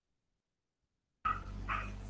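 Dead silence, then about a second in a remote participant's microphone switches on: a steady electrical hum and background noise, with three short high-pitched sounds.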